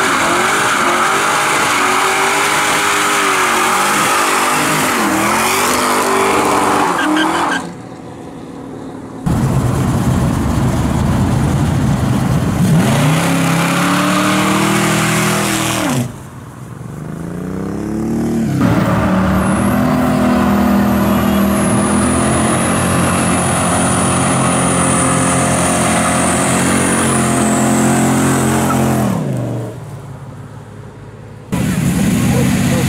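American cars doing burnouts, in a string of short clips: engines revved hard, revs rising and falling, with tyres squealing as they spin. The first clip is a Ford Mustang fastback. In the longest clip, in the second half, an engine holds high revs for about ten seconds under a high, slowly falling squeal.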